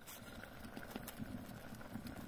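Faint simmering of stew in a small pot over a wood fire: a low steady hiss with a few light ticks.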